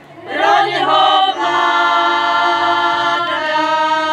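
Women's folk choir singing a cappella in harmony. After a brief breath the voices come back in about half a second in and hold one long chord, moving to another chord near the end.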